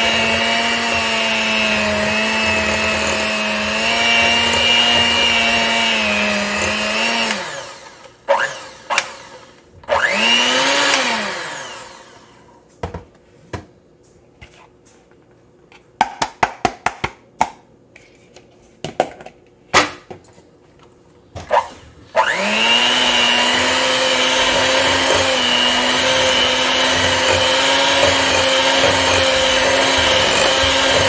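Electric hand mixer running steadily, its beaters churning flour into Nutella batter in a glass bowl. It winds down about seven seconds in, gives one short pulse a few seconds later, and comes back on about eight seconds before the end. In the pause, a scatter of light taps and knocks as more flour is tipped in from a plastic bowl.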